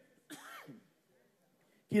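A man's brief throat clear into a lectern microphone, a short falling sound lasting about half a second.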